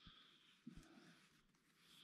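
Near silence, with a faint brief sound about two-thirds of a second in.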